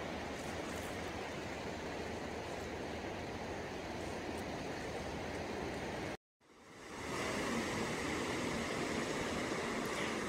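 Steady wash of surf and wind noise at the shoreline. It cuts out abruptly about six seconds in, then a similar steady noise fades back in with a faint hum under it.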